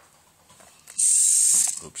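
Hard plastic scraping as the 3D-printed robot's top and circuit board are pried loose: a faint click, then a sudden loud, harsh, hissing scrape about a second in that lasts under a second.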